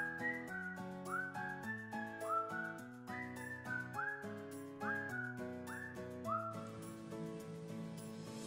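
Background music: a whistled tune, each note sliding up into pitch, over a steady chordal accompaniment.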